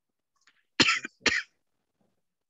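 A person coughing twice in quick succession, two short hard coughs about half a second apart.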